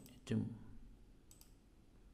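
A computer mouse clicking faintly, two quick clicks about a second and a third in.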